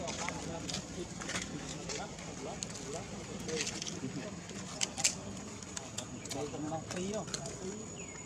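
Indistinct voices chattering in the background, with scattered sharp crackles of dry leaf litter being handled and a faint steady high-pitched whine.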